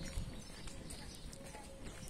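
Footsteps on a paved street, a few irregular steps over a low rumble.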